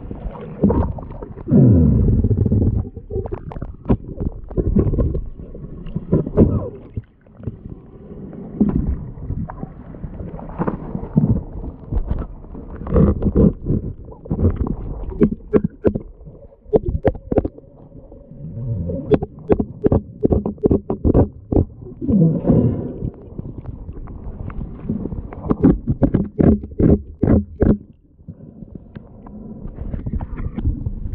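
Muffled underwater sound of a boat hull being scrubbed clean of marine growth, heard through a submerged camera: water sloshing and rumbling, with runs of quick clicks and knocks from the scrubbing strokes, thickest in the second half.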